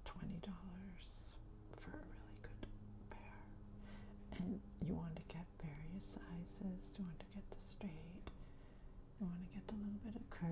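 A woman speaking softly, close to a whisper.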